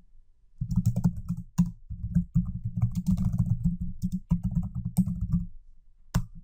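Typing on a computer keyboard: a fast run of keystrokes starting about half a second in, with brief pauses, thinning out near the end.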